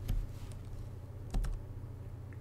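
Two computer keystroke clicks, about a second and a half apart, each with a slight low thump, over a low steady hum.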